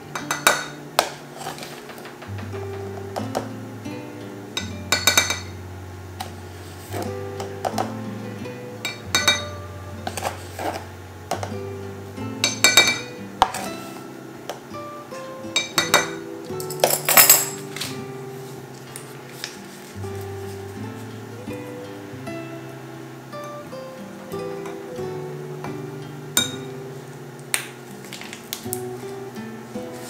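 Background acoustic guitar music over a steady bass line, with a metal spoon clinking against a glass measuring cup a dozen or so times as powdered gelatin is scooped in; the loudest clinks come just past halfway.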